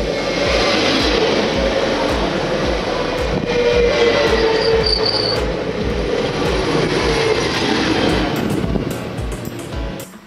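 SNCF electric passenger train passing close by at speed, a loud rush of wheels on rail with a falling whine, dying away near the end. Background music with a steady beat plays underneath.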